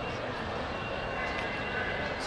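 Steady outdoor background din of a busy urban space, a continuous wash of noise with faint distant voices in it.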